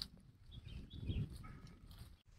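A few faint, short bird chirps over a low outdoor rumble, with a brief click at the very start.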